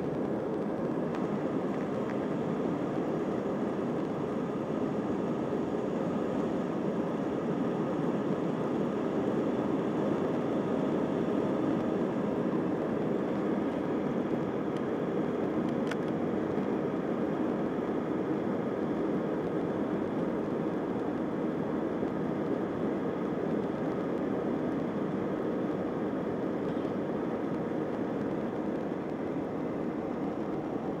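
Steady cabin noise inside an Airbus A320 moving on the ground under jet engine power: a continuous low rumble and hiss heard through the fuselage, swelling slightly a few seconds in.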